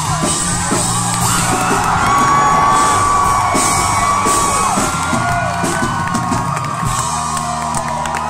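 Live band playing loudly with held bass notes and cymbals, while the crowd close around the phone whoops and yells.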